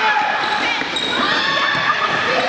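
Basketball game play on a gym floor: a ball bouncing and sneakers squeaking, with players' and spectators' voices echoing in the hall.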